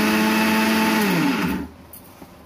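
Electric mixer grinder with a small steel jar, grinding dry coriander-powder ingredients in a short pulse. Its motor runs with a steady hum, then is switched off about a second in and winds down with a falling pitch, stopping about a second and a half in.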